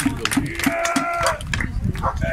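Viking reenactors' round wooden shields being beaten in a quick rhythm, about four blows a second, slowing over the first second. Partway through, a long drawn-out call rings out over the blows.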